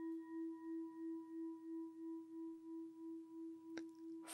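A meditation bell rings out after being struck, a single steady tone that wavers in an even pulse of about two beats a second and fades slowly. It marks the opening of a meditation. A faint click comes near the end.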